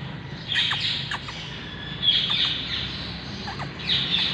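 Birds chirping in three loud bursts, near the start, about two seconds in and near the end, with short downward-sliding calls between them.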